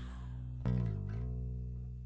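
Punk rock guitar and bass holding a final chord that rings out and fades at the end of the song. A sharp new strike comes about two-thirds of a second in, its pitch sagging briefly before it settles and keeps fading.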